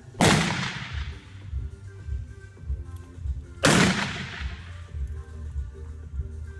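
Two single-action revolver shots fired from horseback at balloon targets, about three and a half seconds apart, each loud and sharp with a long echo off the enclosed metal arena.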